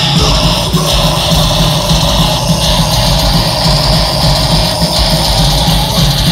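Heavy metal band playing live at full volume: distorted electric guitars, bass and drums in a loud, dense mix, heard from the crowd.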